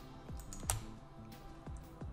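A few sharp clicks from a computer mouse and keyboard while a slab rectangle is drawn in CAD software, the loudest about two-thirds of a second in, over faint background music.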